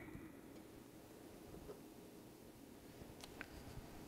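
Near silence: room tone with a faint low hum, and a few faint short clicks a little after three seconds in.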